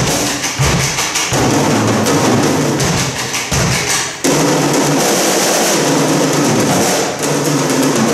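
Several drum kits playing an ensemble drum piece together, with dense, fast strokes on drums and cymbals. The deep bass drum and tom sound drops away about four seconds in, and the playing goes on higher and lighter.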